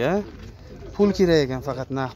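A man's voice making two drawn-out vocal sounds, no clear words: a short falling one right at the start and a longer one about a second in.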